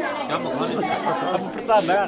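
Several people talking at once, their voices overlapping in conversation.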